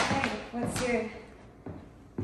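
A person's voice for about a second, without clear words, opening with a sharp tap; it fades near the end, where a lighter tap comes.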